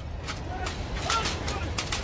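A large fire burning on an offshore oil platform: a steady low rumble with a rapid, irregular run of sharp crackles and knocks, and a brief strained voice about a second in.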